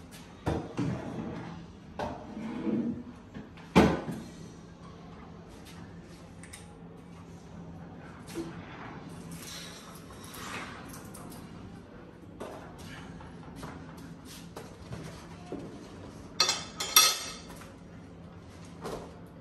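Kitchen clatter of plates, containers and utensils being handled and set down on a stone countertop: scattered clicks and knocks, one sharp knock about four seconds in and a burst of clinking clatter near the end, over a faint steady hum.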